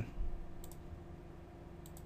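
Two faint computer mouse clicks, a little over a second apart, as a spline object is picked in the software, over a low steady room hum.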